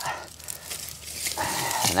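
Gloved hands scraping and digging in loose soil to work a broken piece of brick out of the ground: a run of small scratchy crackles, then a short steadier scrape near the end.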